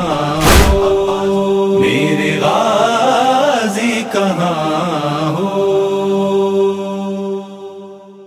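Closing of an Urdu noha: voices chanting held, wordless notes in a slow lament, after one last deep thump of the noha's matam beat about half a second in. The voices settle on a long steady note and fade out near the end.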